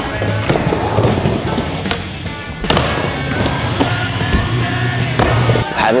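Skateboard wheels rolling and carving through a bowl with a steady low rumble, and a few sharp clacks from the board, over background music.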